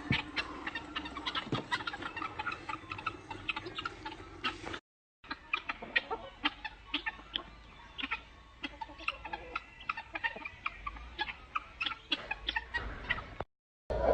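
A flock of helmeted guinea fowl and chickens clucking and chattering in many short calls. The sound cuts out briefly about five seconds in.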